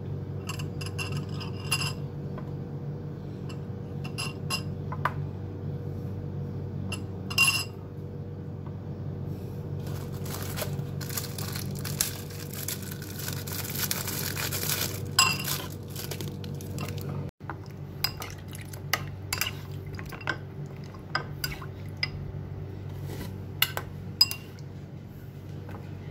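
Biscuits being dipped in a ceramic bowl of milk and set down in a glass baking dish: scattered light clinks and taps against the glass dish and the bowl, with a steady low hum underneath.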